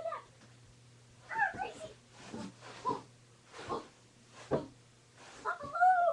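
A dachshund's short yips and barks during rough play, a few in a row with gaps, the loudest near the end, mixed with short breathy huffs.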